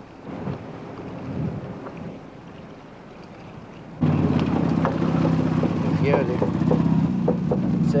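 Faint outdoor background at first. Then, about halfway, an open off-road vehicle's engine comes in suddenly and runs loud and steady as the vehicle drives through the bush.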